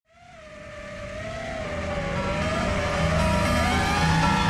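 The soundtrack's opening fading in from silence: a wavering whine-like tone over low notes that change in steps, the tone gliding upward near the end.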